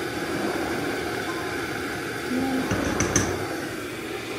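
Steady rushing noise from a kitchen appliance. About three seconds in, a wooden spoon knocks once against the rim of a stainless steel soup pot with a short clink.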